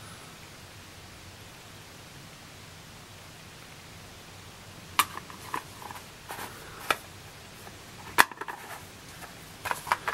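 Plastic wafer carrier and its snap lid being handled: after several seconds of faint room hiss, a handful of sharp plastic clicks and taps start about halfway through, with a few more close together near the end.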